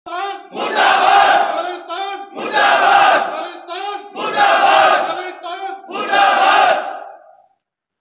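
Slogan chanting in call and response: one man shouts a short call and a group of men shouts the answer back together, four times over. Each group answer is longer and louder than the call, and the last one fades out shortly before the end.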